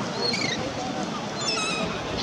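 A steady murmur of background voices, with two short, high, wavering animal calls, the first about half a second in and the second near the end.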